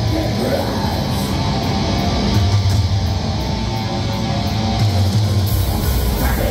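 A live heavy rock band playing loudly: electric guitar, bass guitar and drum kit with cymbals.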